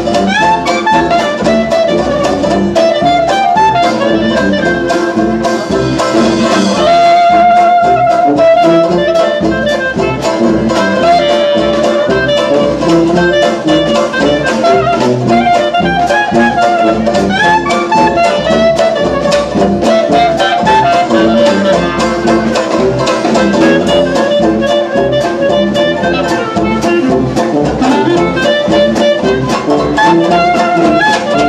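Traditional jazz band playing live, with a clarinet leading the melody over a rhythm section keeping a steady beat.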